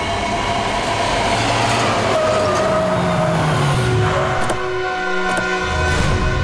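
A car driving up and slowing to a stop, its engine note falling, under a rush of noise. About four and a half seconds in, held music tones come in with two sharp clicks, fitting car doors opening.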